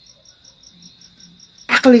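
A faint, high-pitched steady trill with an even pulse of about six beats a second, running under a pause in speech; a man's voice comes in near the end.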